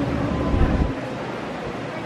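A stage pyrotechnic effect going off: a deep, noisy rumble that cuts off abruptly about a second in, leaving a quieter outdoor hiss.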